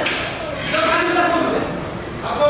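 A man shouting, his voice drawn out into one long held call about halfway through.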